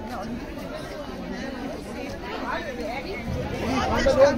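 Crowd chatter: several women's and men's voices talking over one another, none clear, growing louder near the end.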